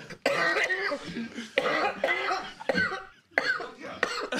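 A man laughing and coughing in several fits, hard enough to clear his throat.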